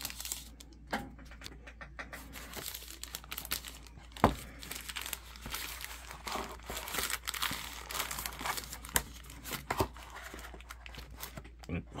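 Paper and plastic packaging crinkling and rustling as a device's wrapping and its molded pulp tray are handled, with scattered small clicks. A sharp knock about four seconds in is the loudest sound, and there are two lighter knocks near the end.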